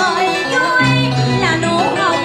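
A woman singing into a microphone over backing music, her voice sliding and bending between notes.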